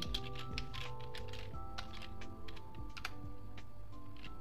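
Typing on a computer keyboard: a run of irregular keystrokes over steady background music.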